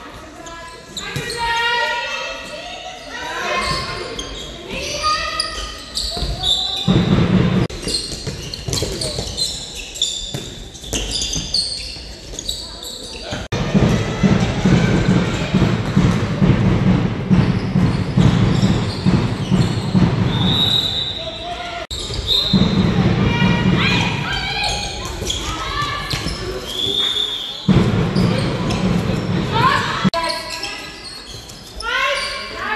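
Handball match in a large, echoing sports hall: the ball bouncing on the hall floor amid players' and spectators' voices, growing louder in several stretches.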